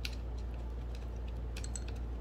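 Light clicks and ticks of hands working a small tool on an air file's nuts and deck, over a steady low hum.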